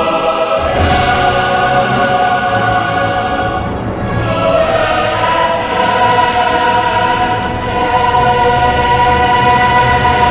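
Large choir with symphony orchestra singing and playing long, held chords in a slow choral hymn; the harmony moves to a new chord about four seconds in.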